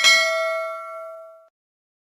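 A single bell 'ding' sound effect from a subscribe-button animation, marking the click on the notification bell. It rings out once and fades away over about a second and a half.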